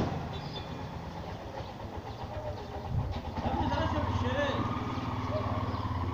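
A motor vehicle engine running steadily close by, a low even drone, with voices and street noise joining in from about halfway through. A brief sharp knock comes right at the start.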